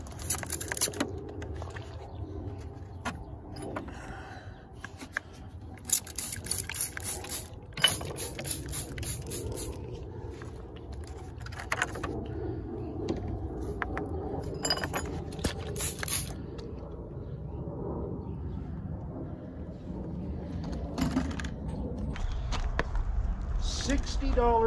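Chunks of rough rock clinking and scraping against each other as they are shifted in a plastic crate, in several short clusters of clicks, over a steady low rumble.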